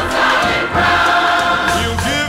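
Gospel choir singing with accompaniment, the voices holding sustained notes.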